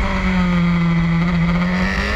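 BMW S1000RR superbike's inline-four engine at low revs in second gear through a tight hairpin. Its pitch dips slightly early on, holds steady, and starts to climb again near the end as the throttle comes back on.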